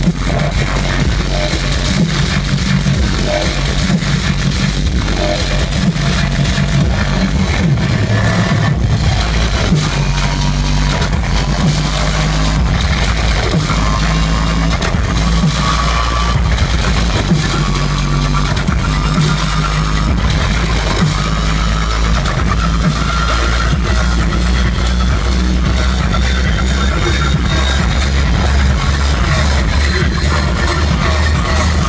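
Loud, bass-heavy dubstep from a live DJ set, played over a concert sound system and heard from within the crowd. A heavy sub-bass runs throughout, with no pause.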